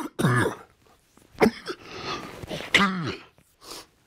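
A man coughing into his hand: four coughs about a second apart, the last one weaker.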